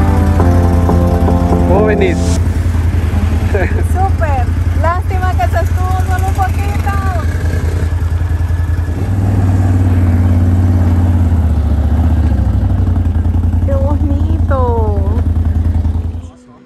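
Can-Am ATV engine idling with a steady low drone that shifts in pitch around the middle, with brief voices over it. Background music fades out about two seconds in.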